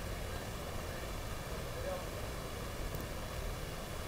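Faint, steady background noise: a low rumble with a light hiss, and no distinct events.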